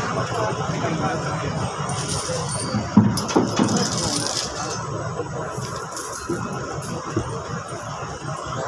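Iron chains on a tusker elephant clinking and jangling as it shifts its legs, a run of sharp metallic clinks loudest about three to four seconds in, over a steady murmur of crowd voices.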